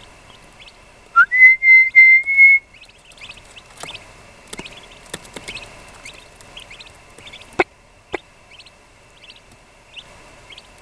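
Young eastern wild turkey poults peeping in faint short chirps, broken about a second in by a loud run of five short whistled notes held at one steady pitch. A sharp click sounds near the end.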